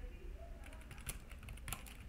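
Faint clicking of computer keyboard keys being typed, with a quick run of keystrokes in the second half.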